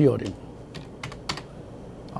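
Computer keyboard keys clicked a few times in quick succession, a handful of sharp clicks about a second in.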